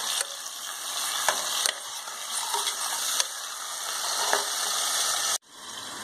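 Chopped tomatoes and onions sizzling in hot oil in a pot while a spoon stirs them, with a few light clicks of the spoon against the pot. The sizzle cuts off suddenly near the end.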